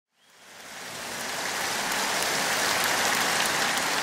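Audience applauding, fading in from silence over the first second and then holding steady.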